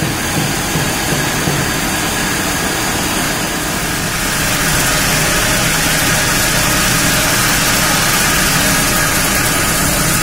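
Artificial rice extrusion line running: a steady, loud machine noise of motors and extruder with a low hum and a broad hiss. It grows louder and hissier about four seconds in.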